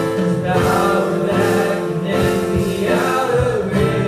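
A small group of voices singing a worship song into microphones, over a steady instrumental accompaniment.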